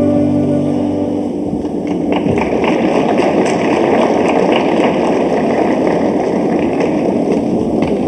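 The program music's final sustained chord stops about a second in, followed by audience applause, a dense patter of many clapping hands.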